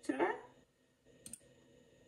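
A brief burst of a woman's voice at the start, then a quick double click at the computer a little over a second in, against a quiet room.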